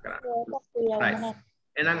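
Speech only: a person talking in short phrases over a video call, with a short pause near the end.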